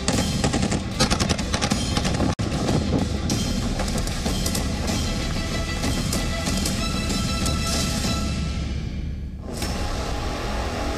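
Rapid bursts of automatic gunfire from machine guns and rifles, mixed with dramatic background music. The sound cuts out for an instant about two and a half seconds in.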